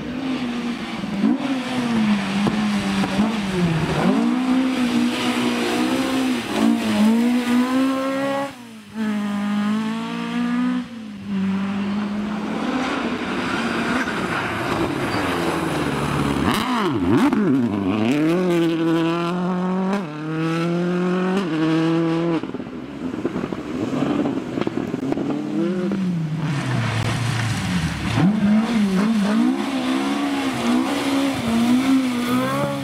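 Rally cars driven hard on a gravel stage, one after another. Their engines rev high, the pitch climbing and then dropping back sharply at each gear change. Around the middle it is a Subaru Impreza WRC's turbocharged flat-four.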